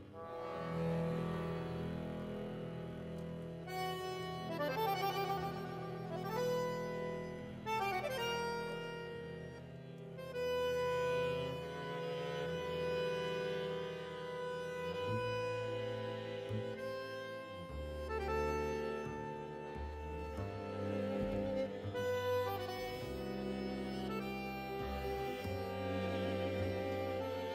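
A Victoria chromatic button accordion plays a tango melody with a string quintet of violins, viola, cello and bowed double bass. The low strings hold one long bass note for about the first half, then move in shorter, changing bass notes.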